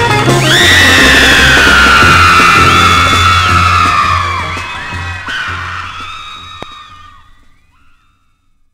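Closing bars of a live 1960s surf-rock band record, a bass and band rhythm with long high screams gliding down over it, the whole recording fading out to silence by the end.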